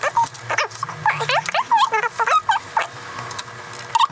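Two people's voices in a fast-forwarded conversation, sped up into high-pitched, chipmunk-like chatter of quick rising and falling squeaks, with a few sharp clicks among them.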